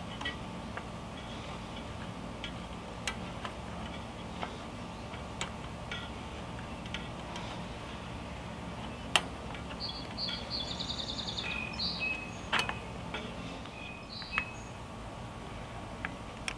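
Spoke wrench turning the metal spoke nipples of a bicycle wheel as the spokes are tightened: scattered sharp ticks and clicks at irregular intervals, a louder one about nine seconds in.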